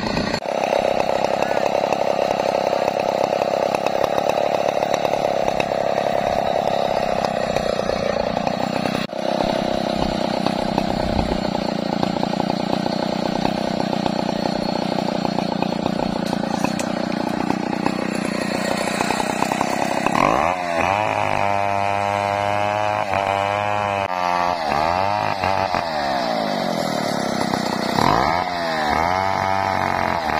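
Two-stroke chainsaw cutting through a sengon log, held at high, steady revs for about twenty seconds. It then drops to lower revs that rise and fall with the throttle.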